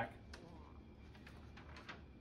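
Faint, scattered crinkles and ticks of a sheet of old paper being handled and turned over, over quiet room tone.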